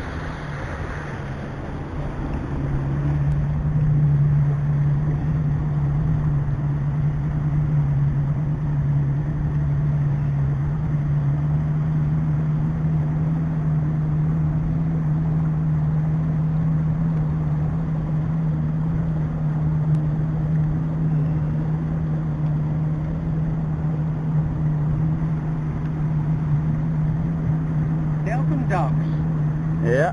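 Small boat's outboard motor running steadily under way, its drone picking up about three seconds in and then holding level, with wind and water noise.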